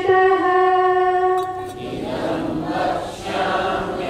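Sanskrit verse chanted in a sung melody: one high voice holding long notes, then from about two seconds in a group of voices chanting together in unison.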